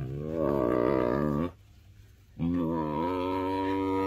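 Tiger vocalizing in two long, low, drawn-out calls, answering a greeting while being stroked. The first lasts about a second and a half; the second starts after a short pause and runs on.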